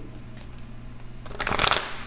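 A deck of tarot cards being shuffled, a brief rustle of about half a second in the second half.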